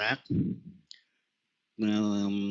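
A man speaking Vietnamese over an online voice-chat connection. His speech stops about three quarters of a second in, a single short click follows, then a moment of dead silence before he resumes near the end.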